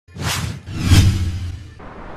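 Two whoosh sound effects of a news channel's logo intro, the second carrying a deep boom, dying away after about a second and a half.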